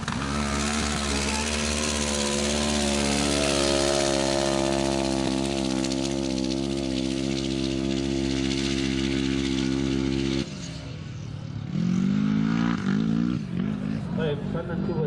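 Side-by-side buggy's engine held at full throttle as it launches and climbs a sand dune, a loud steady drone with a slight waver in pitch. It cuts off abruptly about ten and a half seconds in.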